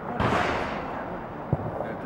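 A dull bang followed by a rushing noise that dies away over about a second, then a single short knock about a second and a half in.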